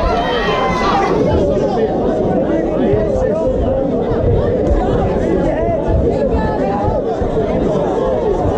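Boxing crowd: many voices shouting and calling out over one another, with no single voice standing out.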